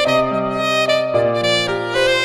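Instrumental worship music: a saxophone plays a slow melody of long held notes over piano accompaniment.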